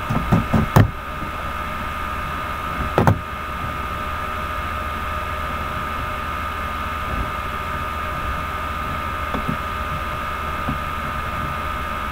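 Steady background hum with a thin high whine and a low drone, with a couple of short knocks in the first second and another about three seconds in.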